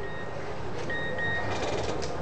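A high electronic beep sounding twice, each about half a second long, over a steady low hum, with a brief rapid ticking near the end.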